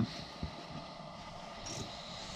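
Quiet, steady hiss of a portable propane heater running.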